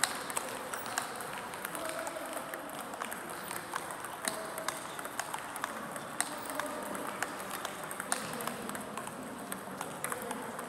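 Table tennis balls clicking off paddles and tables at several tables at once: many sharp, irregular clicks, echoing in a large gym.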